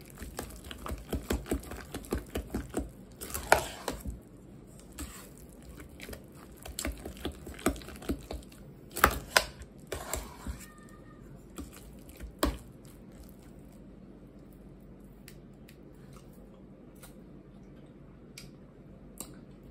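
Metal spoon stirring thick mashed potatoes in a stainless steel pot: quick clicks and scrapes of the spoon against the pot, densest in the first four seconds, then scattered knocks that stop about thirteen seconds in.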